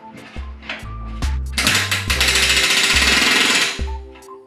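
Pneumatic rivet gun hammering in one burst of about two seconds, bucking solid aluminum rivets that hold an elevator piece to its spar.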